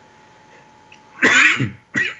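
A man coughs into his hand: one short, harsh cough a little over a second in, then a brief second catch just before the end.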